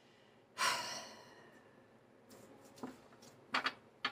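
A woman's breathy sigh about half a second in, fading within a second. Two short, soft sounds follow near the end.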